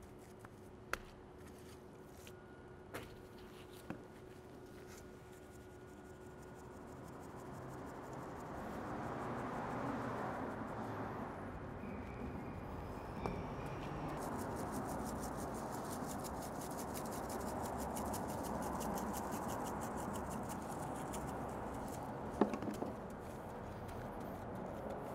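Rub being sprinkled and pressed into a raw brisket by gloved hands. A few light clicks in the first seconds are followed, from about a third of the way in, by a longer stretch of soft rustling and rubbing, with a sharper knock near the end.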